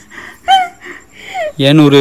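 Voices only: a few short gasping vocal sounds with quick rises and falls in pitch, then a voice saying "enna" (Tamil for "what") near the end.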